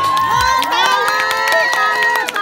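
Audience cheering as the dance music stops, with many long, high shouts and whoops overlapping and some clapping.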